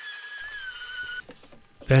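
Random orbital sander running on plywood with a steady, slightly wavering high whine that cuts off a little over a second in.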